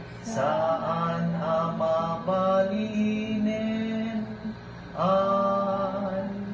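Slow, chant-like singing in long held notes, with a short pause about four seconds in before the next phrase starts.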